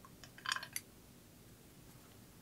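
A quick cluster of small clicks and taps, loudest about half a second in, as a knife handle is pushed onto its threaded tang and seated against the guard.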